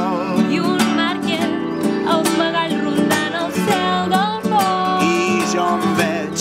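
Acoustic guitar strummed while a man sings long, wavering held notes without clear words.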